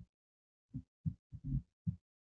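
Short, dull low thumps picked up by a wired earbud microphone, about six in two seconds at uneven spacing, with dead silence between them: handling noise, as from the hand or cable bumping the mic.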